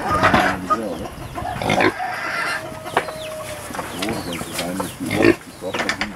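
Kunekune pigs grunting while they feed, with chickens clucking among them. Three louder calls stand out: near the start, about two seconds in, and shortly before the end.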